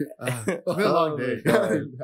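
A man's voice speaking, with throat clearing; the words are not made out.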